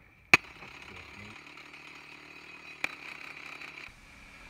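Electric demolition hammer running steadily as it breaks into rock. There is a sharp click about a third of a second in, the loudest moment, and a smaller knock near the end.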